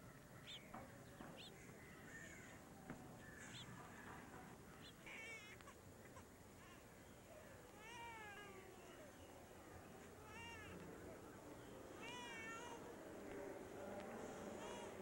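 Faint animal calls: short, wavering, high-pitched cries, about four of them two to three seconds apart from about five seconds in, over a quiet background.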